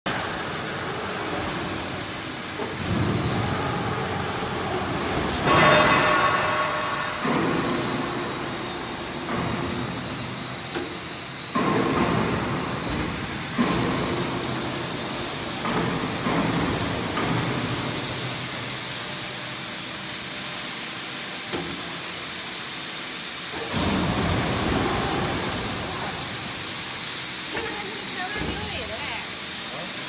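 Hydraulic plate rubber vulcanizing press in operation: a steady pump hum under machine noise, with louder surges every couple of seconds as the platens move.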